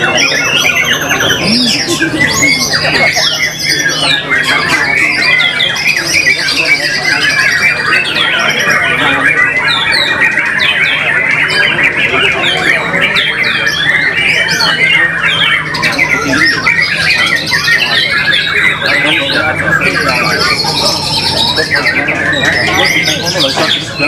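White-rumped shamas (murai batu) and other caged songbirds singing loudly all at once, a dense, unbroken tangle of overlapping whistles and chatter, with people's voices underneath.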